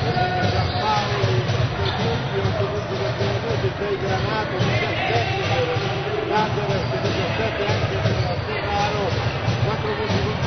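Basketball game sound: a ball bouncing on the court under steady voices from the crowd in the stands.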